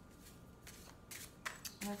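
Hands shuffling a deck of oracle cards: a few short, soft card-against-card brushes, faint.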